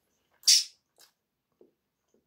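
A short, loud burst of air like a snort or sharp sniff about half a second in, followed by two faint clicks.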